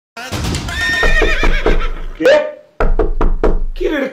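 A man laughing loudly and mockingly: a drawn-out rising laugh, then, after a brief break about two and a half seconds in, a quick run of evenly spaced 'ha-ha' pulses. A low hum runs underneath.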